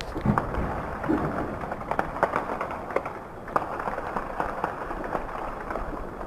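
Distant small-arms gunfire during heavy fighting: scattered, irregularly spaced sharp cracks over a steady background rumble.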